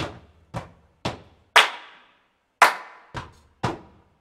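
A rhythmic pattern of sharp percussive hits, about two a second, in a break between sung lines of a song; two hits near the middle are louder than the rest.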